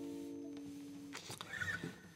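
A guitar's final chord ringing out and fading, damped about a second in; a few faint, short noises follow.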